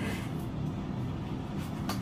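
Hands handling packaging inside a cardboard box over a steady low rumble, with a single sharp click near the end.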